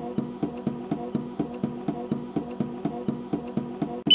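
SynCardia Freedom portable driver for the Total Artificial Heart running, its pneumatic pump pulsing in a steady, fast, even rhythm.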